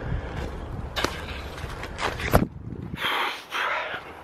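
Handling noise from a handheld camera being swung around: a low rumble with a few knocks, then a short rustle about three seconds in.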